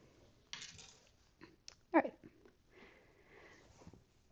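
A short sniff about half a second in, then a spoken "alright" about two seconds in, with a few faint small ticks around it.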